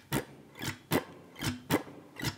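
Archtop jazz guitar strummed in an even rhythm of short chord strokes, about four a second: firm downstrokes with light upstrokes in between, a vintage-jazz comping strum.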